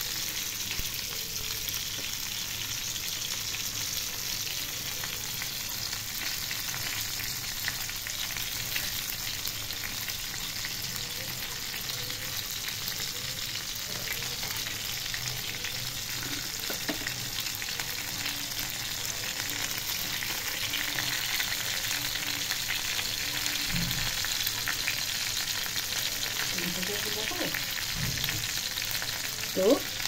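Chicken drumsticks sizzling and crackling steadily in hot mustard oil in a frying pan, nearly cooked through.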